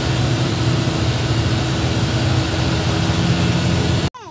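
Dump truck's diesel engine running steadily, heard from inside the cab: a continuous low drone with a faint steady whine above it.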